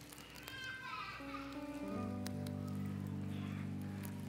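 Soft live instrumental band music: a few drifting higher notes, then a sustained low chord swelling in about two seconds in and held.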